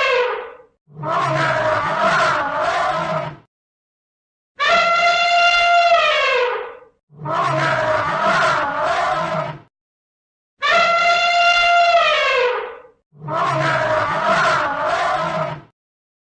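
An elephant trumpeting: a loud brassy blast whose pitch falls away at its end, followed by a rougher, lower roar. The pair repeats about every five seconds in an identical pattern.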